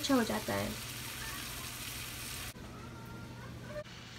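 Onion-tomato masala for a chickpea curry sizzling in a frying pan, the spices and tomato purée frying in oil. The sizzle cuts off abruptly about two and a half seconds in, leaving quieter room tone with a faint steady tone.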